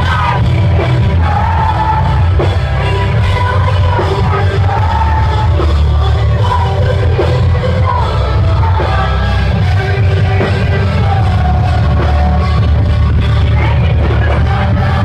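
Post-hardcore band playing live at full volume: heavy guitars, bass and drums under a sung lead vocal line.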